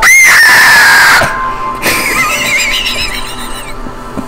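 A sudden, very loud, high-pitched shriek lasting about a second and sliding slightly down in pitch, then music with a warbling high sung voice.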